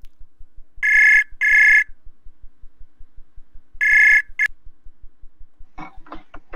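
Web video-call ringtone: an electronic two-tone ring in two short bursts, a pause, then another burst and a brief last one cut off short as the call connects.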